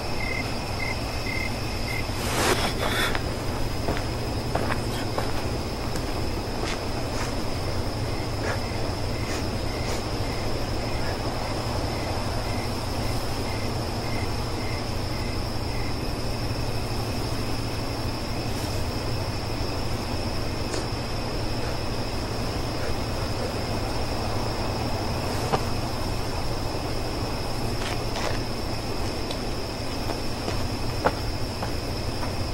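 Night-time insect ambience: a steady high-pitched drone of crickets, with a slower chirp repeating about twice a second for several seconds in the middle, over a low steady rumble.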